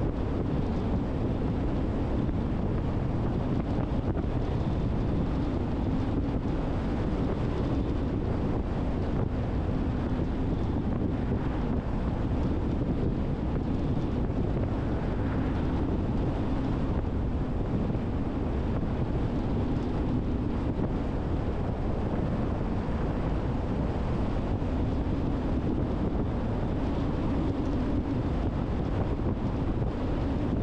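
Steady tyre and wind noise of a car driving at highway speed, an even rushing sound with a low hum and no distinct events.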